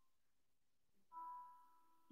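Near silence, then about a second in a single faint bell-like musical note that fades away over about half a second.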